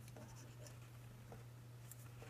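Faint snips of scissors cutting a strip of paper, a few short cuts, over a steady low hum.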